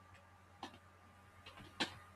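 A few faint computer keyboard keystrokes, separate clicks with the loudest near the end, as terminal commands are typed and entered.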